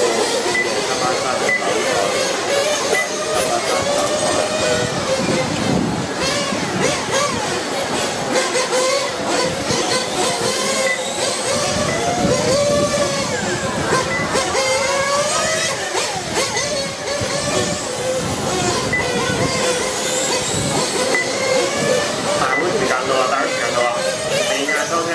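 Several radio-controlled motorcycles racing together. Their motors whine, overlapping and gliding up and down in pitch as the bikes speed up and slow down around the circuit.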